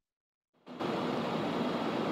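Complete silence for about two-thirds of a second, then a steady, even hiss of street noise from an outdoor microphone.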